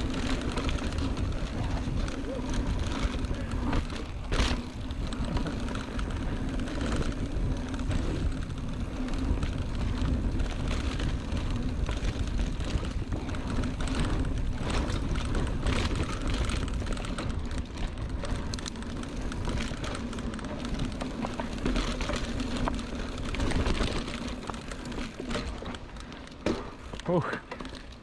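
Mountain bike rolling fast down a dirt singletrack: a steady hum from the knobby tyres on the dirt, with the chain and frame rattling over roots and bumps, and wind rumbling on the helmet-camera microphone.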